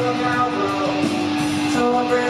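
Rock band playing live, with electric guitar holding sustained chords that change about a second in.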